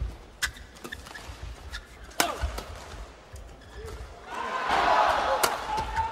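Badminton rackets striking the shuttlecock in a fast doubles exchange, a few sharp smacks in the first couple of seconds. From about four seconds in, an arena crowd cheers and claps, louder than the shots.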